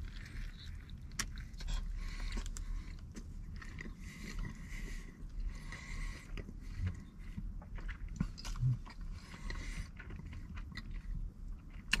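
A person biting into and chewing a mouthful of a sauce-laden double-patty bacon burger, with irregular small wet clicks and smacks.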